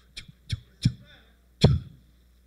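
Four short, sharp pops close to the microphone, irregularly spaced, the last one, about one and a half seconds in, the loudest.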